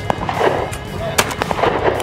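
Tactical shotgun firing, with sharp reports near the start and again about a second later, over other gunfire on the range.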